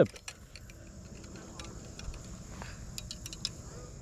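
Light, scattered metallic clicks and rattles of a fishing rod and reel being handled.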